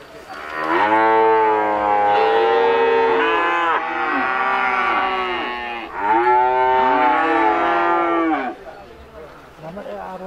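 Cattle mooing: a long drawn-out call starting about half a second in and lasting about five seconds, then a second shorter call that stops about eight and a half seconds in.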